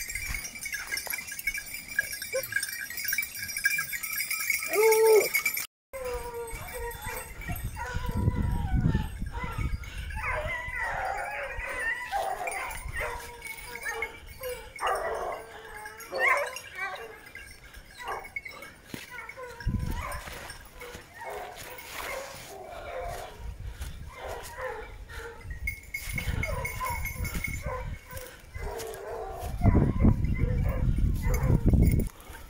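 Wild boar hunting hounds baying in the brush from about six seconds in, several dogs' calls overlapping.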